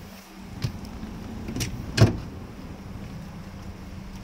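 Manual car seat slide mechanism being worked: a few light clicks and one sharp clunk about two seconds in as the seat rail latches, over a steady low hum in the car cabin.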